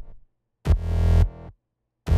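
Logic Pro X 'Juicy Pump Bass' synth patch: a held low note ends just after the start, and a second short, heavy bass note sounds from a little past the half-second mark for about a second.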